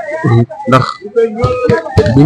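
Speech only: a man talking into a handheld microphone, with short pauses.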